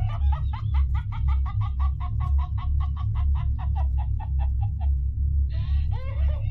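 A talking Chucky doll's recorded voice laughing in a long, rapid cackle, about six 'ha's a second, that stops about five seconds in, over music with a strong low bass.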